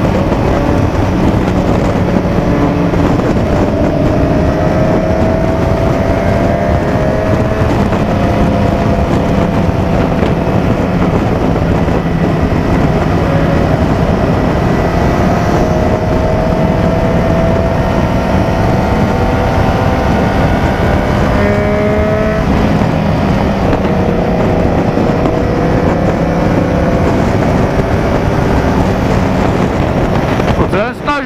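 Motorcycle engine running at highway speed under a steady rush of wind on the microphone. Its pitch climbs slowly and drops back several times.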